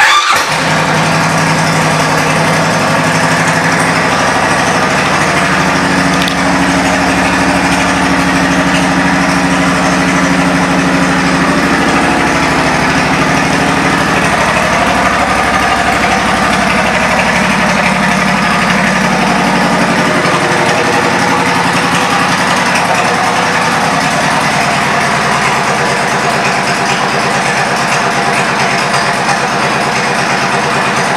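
2008 Suzuki Boulevard C90T's 1462 cc V-twin engine idling through aftermarket Cobra exhaust pipes. It comes in suddenly and runs steadily, its tone shifting slightly about halfway through.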